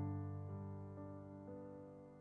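Soft, slow piano music: held chords with a new note struck about every half second, gradually fading.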